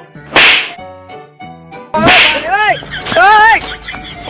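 Loud sound effects over background music: a short, sharp hissing burst, then a second one about two seconds in, followed by a pitched swooping tone that rises and falls several times.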